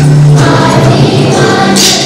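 Children's choir singing, holding sustained notes, with a tambourine shaken briefly near the end.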